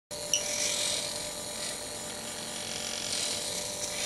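Small electric servo motor of a homemade RC tractor's aluminium grab clamp whining steadily as the clamp moves, with a sharp click near the start.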